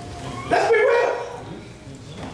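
A short, loud vocal exclamation, about half a second in and lasting under a second.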